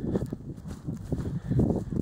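Footsteps of a person walking across grass, over a low irregular rumble.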